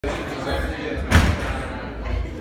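Indistinct voices murmuring, broken by one sudden loud thump a little over a second in.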